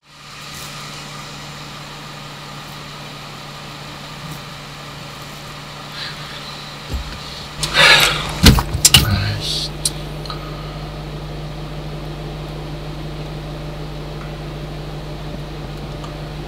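Steady low hum of a car engine idling, heard inside the cabin. About halfway through comes a loud burst of knocks, thumps and rustling as objects are flung and struck inside the car. The hum then carries on.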